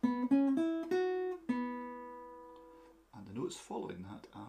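Nylon-string acoustic guitar: a quick run of about five single plucked notes from a blues-in-E pattern, then one note left ringing and fading for about a second and a half.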